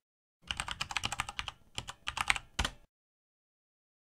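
Typing on a computer keyboard: a quick run of keystrokes lasting about two and a half seconds, entering a word into a search box, then stopping abruptly.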